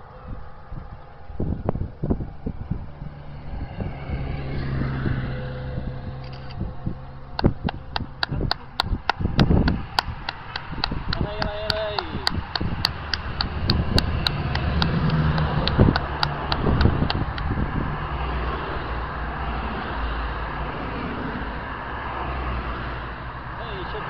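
Motor vehicles passing along the road during a cycling road race, with a steady engine hum and road noise. Midway through there is a run of sharp, evenly spaced clicks, about four a second for some ten seconds, and a brief tone.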